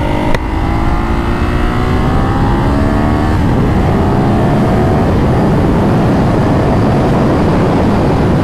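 Ducati Hypermotard 939's L-twin engine accelerating hard under throttle. The pitch climbs for about three seconds, drops once as it shifts up a gear, and climbs again, with wind noise rising with the speed.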